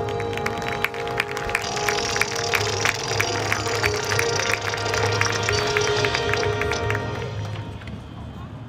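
Marching band playing a sustained brass chord over quick, sharp percussion strikes; the sound thins out near the end.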